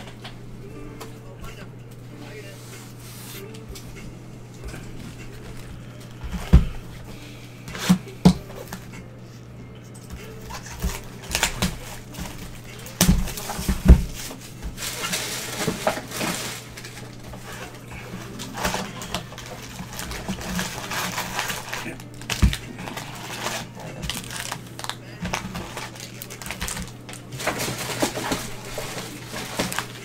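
Cardboard trading-card boxes knocked and set down on a tabletop, a handful of sharp knocks, with stretches of rustling and crinkling from foil card packs being handled, over a steady low hum.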